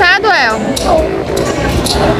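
Crowd chatter in a busy mall food court, many voices mixing under a large indoor room's echo. In the first half second one high voice slides up and down in pitch.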